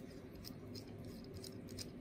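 Faint handling of a metal fountain pen: a few light clicks and rubs as the barrel is twisted off the section.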